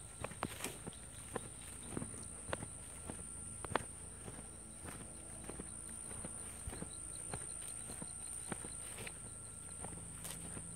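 Footsteps on a dirt and grass path, an irregular series of soft steps that come most often in the first few seconds.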